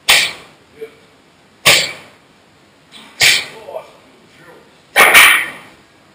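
Strikes landing on training pads, each with a sharp exhaled breath. There are four, about a second and a half apart, and the last is a quick double about five seconds in.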